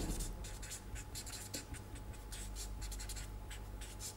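Marker pen writing on paper: a quick run of short scratching strokes as an equation is written out, over a low steady electrical hum.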